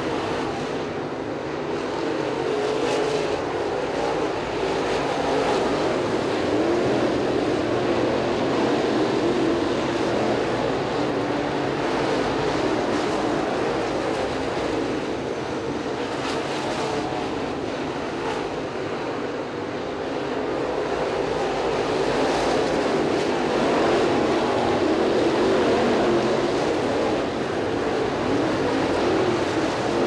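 A pack of crate late model race cars' V8 engines running laps together, a dense, continuous din that swells louder twice as the field comes around.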